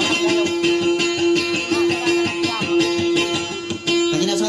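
Plucked string instrument playing quick, busy notes over a steady held drone, as dayunday accompaniment.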